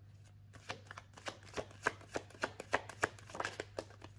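A deck of tarot cards being shuffled by hand: a run of quick, papery snaps about three a second, starting about half a second in.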